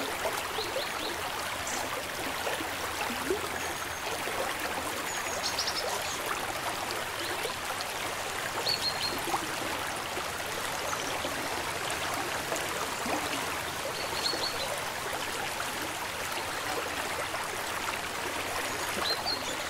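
Shallow river running over rocks: a steady, even rush of flowing water. A few short, high chirps sound now and then above it.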